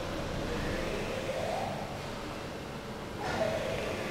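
Steady machine hum of a machine-tool workshop, with a faint whine that rises and falls about a second and a half in and a louder sound with a falling pitch near the end.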